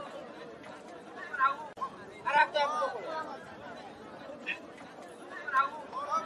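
Several people's voices chattering, with a few louder calls standing out over a steady background murmur.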